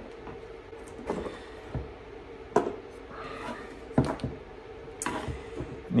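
A handful of light separate clicks and knocks as cylindrical 18650 lithium-ion cells and their plastic cell holder are handled and set against a wooden bench, over a faint steady hum.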